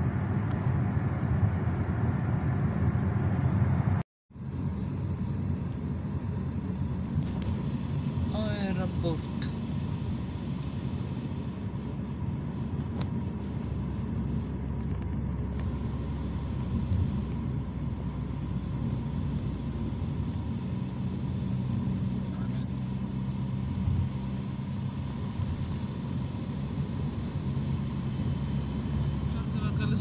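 Steady road and engine rumble heard from inside a moving car's cabin. The sound cuts out for a moment about four seconds in and then resumes.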